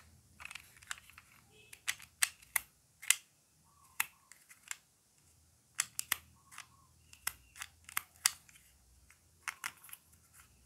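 Pink plastic toy ice cream scoop being handled: a series of irregular, sharp plastic clicks and taps, with short quiet gaps between them.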